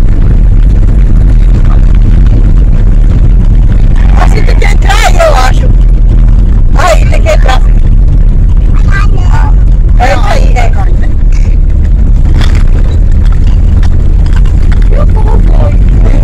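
Loud, steady in-cabin rumble of a moving car's engine and road noise. Voices break in a few times in the middle.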